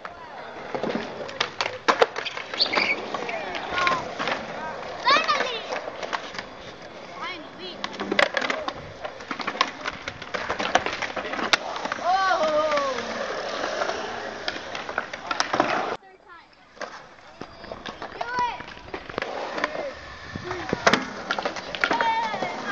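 Skateboard wheels rolling on concrete ramps, with sharp clacks of boards hitting the ground again and again. Voices are heard over it, and the sound drops away briefly about two-thirds of the way through.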